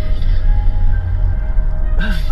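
Music playing on the car radio inside the cabin, with heavy, steady bass.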